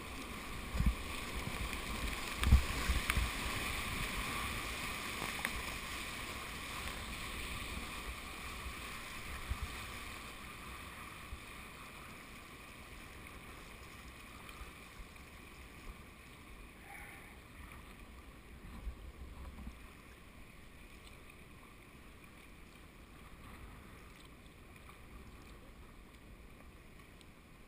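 River rapids at high water rushing around a small boat's bow, loudest at first and fading steadily as the boat moves out of the rapid into flatter current. Two brief low knocks come about a second and two and a half seconds in.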